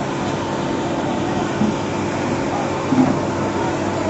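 Steady drone of fire truck engines running their pumps, with two short louder sounds about one and a half and three seconds in.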